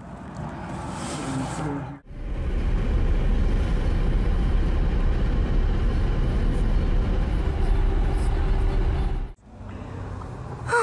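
A car's engine idling, a steady low rumble that starts abruptly about two seconds in and stops just before the end.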